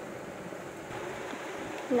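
Steady background hiss of room noise with no distinct events.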